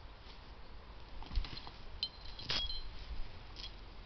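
Faint scattered clicks, snaps and knocks of beech roots and branches being handled and tugged at by hand, the loudest about two and a half seconds in, with a brief high squeak just before it.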